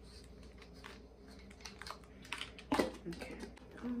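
Light clicks and rustles of small items being handled close to the microphone, quickening after a quiet start, with one louder knock a little before the end: picking up and handling small grooming tools such as a brow spoolie.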